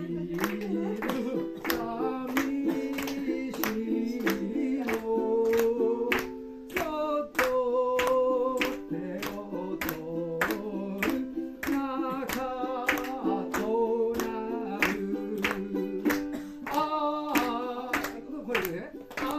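A man singing a Japanese song while strumming a ukulele, with several people clapping along in a steady beat.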